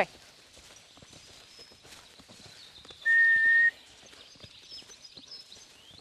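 A horse's hoofbeats on a sand arena, faint and continuous as it moves around the pen. About halfway through comes a short, loud whistle on one steady note, with faint birdsong behind.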